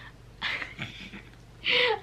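A woman's breathy laughter: a faint puff of breath about half a second in and a stronger, airy laugh near the end.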